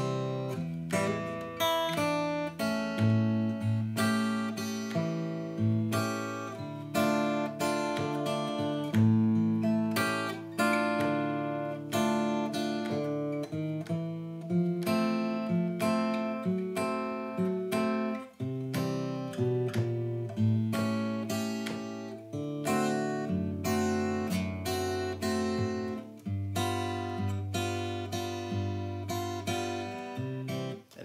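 Acoustic guitar played slowly in a fingerpicked claw-hammer pattern: the thumb takes bass notes while the fingers pluck chord notes between or with them. It runs once through the blues progression C, E7, A7, D minor, A7, D minor, F, F-sharp diminished, C, A7, D7, G7.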